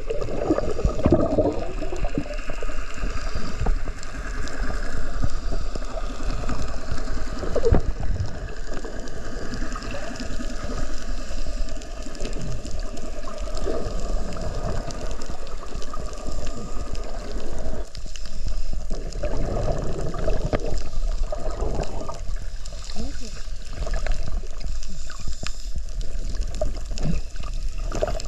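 Underwater sound of scuba divers breathing through their regulators, with bursts of exhaled bubbles rising past the camera, muffled through the waterproof camera housing.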